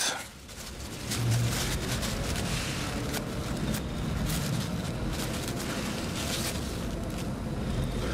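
Paper towel rubbing and crinkling against a USB stick's circuit board as it is wiped clean with alcohol, a steady rustle with many small crackles starting about a second in.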